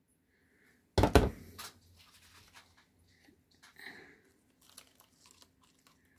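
Handling noise at a craft table: a sudden loud knock and rustle about a second in that fades quickly, then faint scattered clicks and crinkling of paper and plastic as craft pieces are moved.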